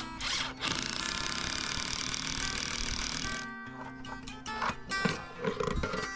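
A cordless drill running steadily for about three seconds, starting about a second in, as it drives a screw into a composite decking riser board. A few short knocks follow near the end, over background music.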